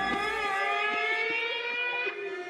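A siren-like sustained tone, rich in overtones, slowly rising in pitch within a psychedelic instrumental mix. It breaks off abruptly right at the end.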